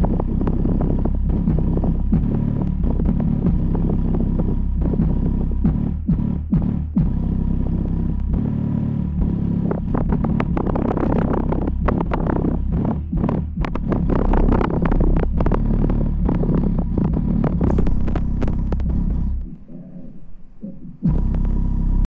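Logitech Z333 subwoofer playing a bass test at high volume: a loud, deep rumble crossed by rapid crackling clicks, thickest midway. The bass drops away briefly near the end, then comes back.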